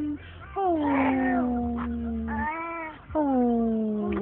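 A voice making long drawn-out whining calls. Each one starts high, slides down in pitch and is then held for about two seconds. A short call falls between the two long ones.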